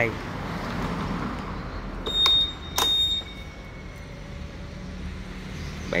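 Two short high-pitched electronic beeps about two seconds in, each starting with a click, from a Honda Click 150i scooter's buzzer, over a steady low rumble.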